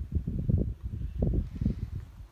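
Wind buffeting the microphone: an irregular low rumble that rises and falls in gusts.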